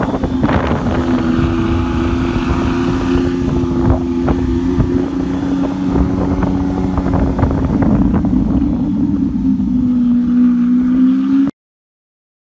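Lamborghini engine cruising at steady low revs, heard from inside the car over road and wind noise. The engine note dips a little past the middle and rises again near the end, then the sound cuts off abruptly.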